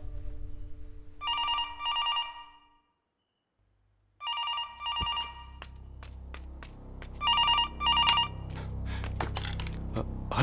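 A telephone ringing with a double-ring trill, three rings about three seconds apart.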